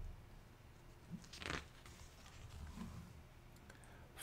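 Faint rustle of a paper book page being turned, strongest about a second and a half in, in an otherwise quiet room.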